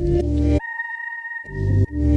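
Background music with a deep, stepping bass line. About half a second in, the bass drops out, leaving a single held high tone. The full music returns about a second later.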